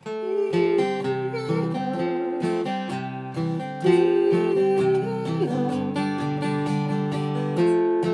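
Steel-string Taylor acoustic guitar strummed steadily, changing chords every second or so: the song's intro progression with its turnaround.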